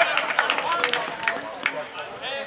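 Footballers calling and shouting to each other during play, their voices indistinct, with a few short, sharp knocks among them.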